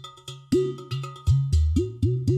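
Udu clay pot drum played with the hands in a rhythmic pattern. Deep, booming bass notes, several swooping upward in pitch as the palm works the hole, are mixed with sharp ringing slaps on the clay body.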